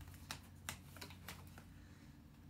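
Faint paper clicks and crinkles as a page of a pop-up picture book is turned and its folded paper scene opens out, a handful of soft ticks spread over two seconds.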